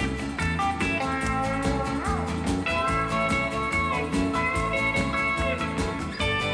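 Country band playing an instrumental break: electric guitar and pedal steel guitar over bass and a steady drum beat, with sustained notes that slide in pitch.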